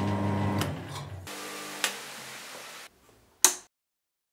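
A workshop machine's electric motor running down after being switched off at its isolator: the hum sinks and stops a little over a second in. A couple of light clicks follow, then one sharp click near the end.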